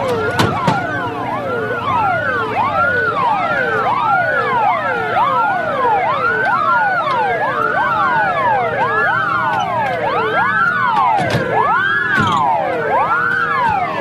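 Several emergency-vehicle sirens wailing at once, each sweeping up and down in pitch about once a second, overlapping out of step.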